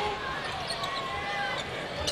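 A basketball being dribbled on a hardwood arena court, with faint voices in the background.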